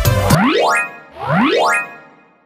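Music cuts off just after the start. Two identical rising cartoon sound effects follow, each a short upward sweep in pitch, about a second apart.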